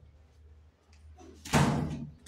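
A single loud bang of a cricket ball striking during a shot, about one and a half seconds in, dying away over half a second.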